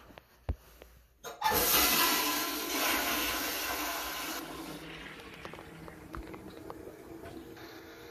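Hotel toilet flushing with great force. A click comes first, then about a second and a half in a sudden loud rush of water that stays at full strength for about three seconds. It then dies down into quieter running water.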